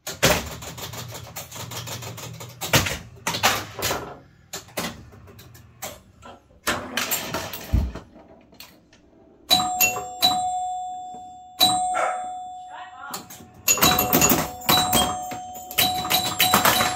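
Bally Old Chicago electromechanical pinball machine in play: rapid clacking of flippers, bumpers, relays and score reels. From about ten seconds in, its scoring chimes ring again and again, each ding fading slowly.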